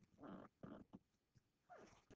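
Near silence: room tone with three faint, short sounds, two in the first second and one near the end.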